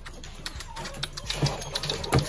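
Scattered light clicks and taps of a puppy's paws and claws moving about on a cluttered work table.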